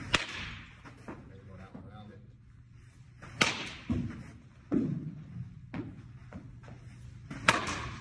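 Baseball bat hitting pitched balls three times, about four seconds apart, each a sharp crack followed by duller thuds of the ball into the cage netting.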